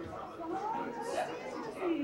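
Audience chatter: several voices talking over one another, too indistinct to make out.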